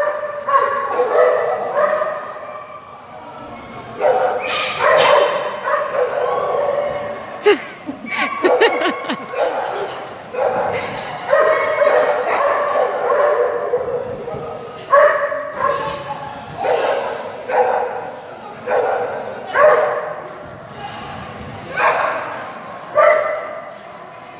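A dog barking and yipping excitedly in repeated short runs while racing through an agility course.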